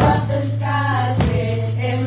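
Church worship band performing a praise song live: a group of singers in chorus with instrumental backing, a beat falling about every 1.2 seconds.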